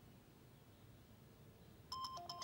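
Near silence: faint room tone, then a mobile phone ringtone's beeping melody begins at the very end.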